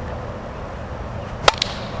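A plastic Wiffle bat hitting a Wiffle ball, a single sharp crack about one and a half seconds in, over a steady low background rumble.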